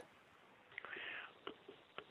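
Near silence in a pause in conversation, with a faint breath and a few small mouth clicks from a man about to answer.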